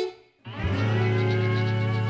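Background music for the show: after a brief drop almost to silence, one long held tone starts about half a second in and stays steady.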